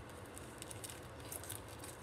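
Faint crinkling and rustling of a clear plastic wrapper being handled, with many small scattered ticks.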